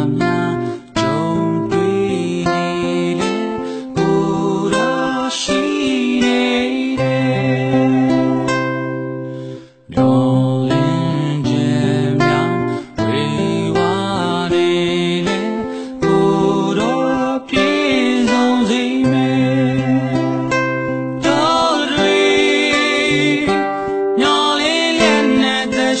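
Gospel song: a voice singing over band accompaniment with plucked strings and a steady bass line. The music drops away briefly just before the middle.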